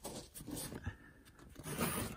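Faint rustling and rubbing of curtain fabric being handled close to the microphone, a little louder near the end.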